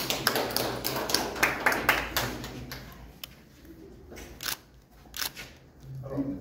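Hand clapping from a small group, dense for about three seconds and then dying away to a few scattered claps.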